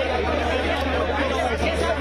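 Crowd of young men talking over one another: a dense, unbroken babble of overlapping voices, with a steady low hum underneath.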